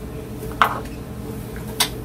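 Two brief sharp clicks of plastic airway equipment (suction catheter and endotracheal tube connector) being handled, about half a second in and near the end, over a steady low hum.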